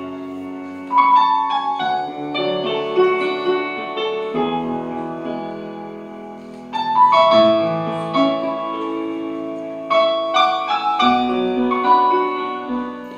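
Solo grand piano playing held chords, a new chord struck every second or two and left to ring, with deep bass notes entering twice.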